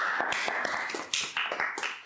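Two people clapping their hands, a quick run of claps that fades out near the end.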